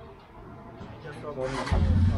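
A three-wheeled cargo rickshaw's engine starting, swelling into a loud low rumble over the last half second.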